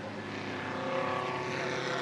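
Engines of several pre-war sports racing cars running as the cars drive past in a group, with several engine notes overlapping. The sound grows a little louder about halfway through as the cars come nearer.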